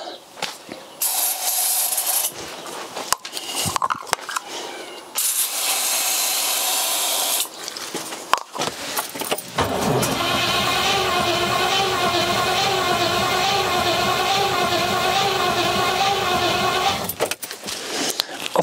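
Two short hissing sprays from an aerosol can of Easy Start starting fluid, then the Rover 4.6 V8 cranking on its starter motor for about seven seconds without firing.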